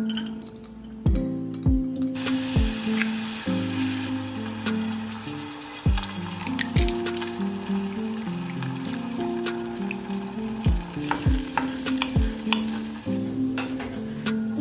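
Diced onion and bell pepper sizzling in hot oil in a stainless steel saucepan; the sizzle sets in about two seconds in and keeps up. Background music with a soft, regular beat plays under it.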